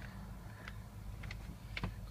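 A 2010 Acura RDX's turbocharged four-cylinder engine idling, a low steady hum heard from inside the cabin, with a few faint clicks.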